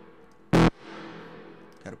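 A single short synth stab about half a second in, followed by its reverb tail. The reverb is sidechain-compressed by the stab itself, so the tail is held down while the stab sounds, then swells back up and fades over the next second.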